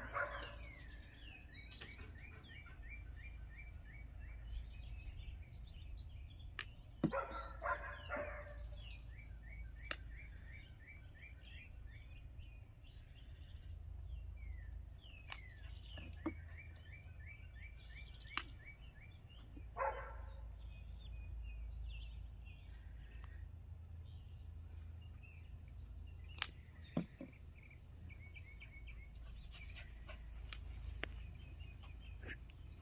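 A songbird sings outdoors, repeating a phrase of quick chirps every few seconds, with a low wind rumble on the microphone. A couple of louder animal calls break in, one around seven to eight seconds in and another about twenty seconds in, and there are a few sharp clicks.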